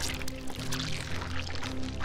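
Background music of sustained low tones, with a soft hissing, crackling sound effect laid over it.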